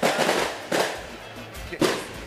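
Firecrackers going off: three sharp bangs, each trailing off briefly, spaced about a second apart.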